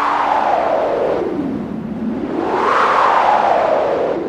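A wind-like whoosh in a film song's backing music: a band of rushing noise that sinks in pitch, swells back up about halfway through, and sinks again.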